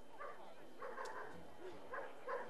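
Faint venue background with a few short, distant calls or voices, and a single click about a second in.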